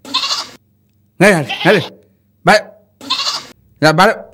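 A goat bleating repeatedly in short calls with brief gaps between them.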